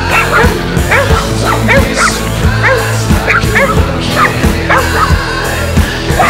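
Dogs barking and yipping in quick, short calls, mixed in over a loud rock song with a steady beat.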